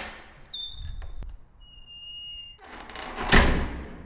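Sound effect of an old door: two long, high, steady hinge squeaks with a click between them, then a loud heavy thud about three seconds in.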